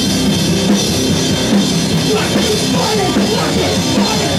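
Live rock band playing loud, with a drum kit and electric guitar going continuously.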